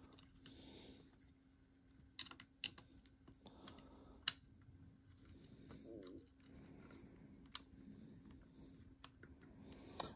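Faint, sparse clicks and soft handling noises of a tiny screw and small Allen wrench being worked into a plastic light-bar stand, with a few sharper ticks spread through it.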